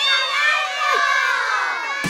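A group of children's voices shouting and cheering together, many high voices overlapping and gliding down in pitch.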